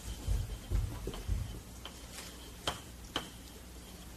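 Chalk writing on a blackboard: a string of irregularly spaced sharp taps and clicks as letters are stroked onto the board, with a few dull low thumps in the first half.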